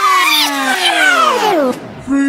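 A power-down sound effect in a dance backing track: a whine that slides steadily down in pitch for about a second and a half and dies away near the end.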